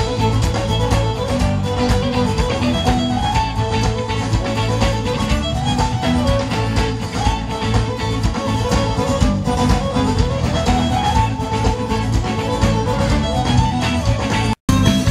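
Live band playing an instrumental passage through a stage PA: a fiddle leads with a melody that climbs and falls in repeated runs, over guitar and a drum kit keeping a steady beat.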